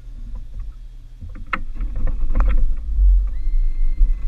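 Bow-mounted trolling motor being raised and stowed: several sharp knocks and clanks of its shaft and mount, over a low rumble that grows louder. A thin steady whine sets in near the end.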